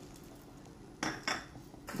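Two quick clinks of a metal spoon against a steel cooking pan, about a second in, a third of a second apart.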